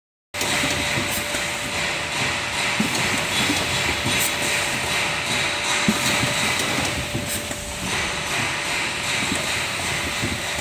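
Linear doypack filling and sealing machine for liquids running: a steady mechanical clatter of irregular clicks and knocks over a continuous hiss, with a faint steady tone underneath.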